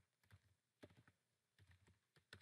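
A few faint computer keyboard keystrokes, spaced apart, as a word is typed.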